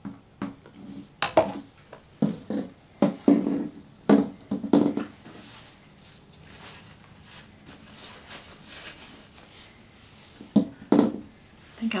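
Handling knocks and taps as a wet painted canvas is set down and moved about on a plastic-covered work table. A run of knocks comes in the first few seconds, then a softer rustling stretch, and two more knocks near the end.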